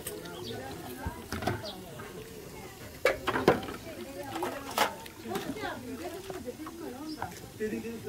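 Stainless steel compartment food trays clinking and clattering as they are washed and stacked, several sharp metallic knocks, the loudest about three to five seconds in, over quiet background chatter.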